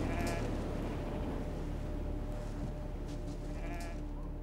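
A sheep (a ram) bleating twice, a short call at the start and another near the end, over a steady low hum.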